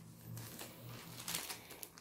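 Clear plastic packaging of circular knitting needles crinkling and rustling softly as the packs are handled.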